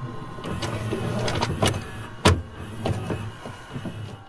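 Sound effects for an animated logo sting: a dense, mechanical-sounding whir with a quick run of glitchy clicks and sharp hits. The loudest hit comes a little past halfway, and the sound thins out near the end.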